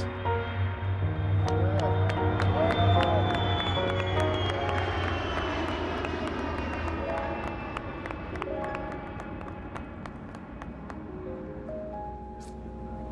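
Background music laid over the jet engines of the WhiteKnightTwo carrier aircraft taking off with SpaceShipTwo beneath it. The engines make a low rumble and a high whine that slowly falls in pitch and fades away over the first seven seconds or so.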